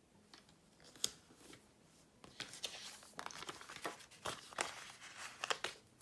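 Faint crinkling and rustling of paper sticker sheets handled by hand, with short clicks and taps as stickers are peeled off and pressed onto the planner page; it gets busier about two seconds in.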